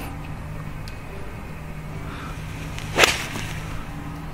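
A golfer's 9-iron swishing through and striking the golf ball about three seconds in: one sharp, clean strike, the loudest thing here.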